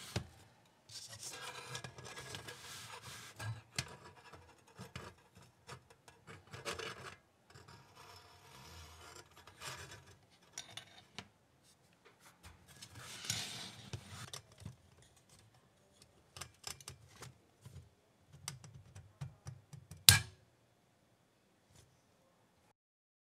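Metal handling noise from a braided stainless gas hose and burner being fitted into a steel folding stove: quiet scraping and rubbing on and off, with many small clicks. One sharp click comes near the end as the burner snaps into place on its pins.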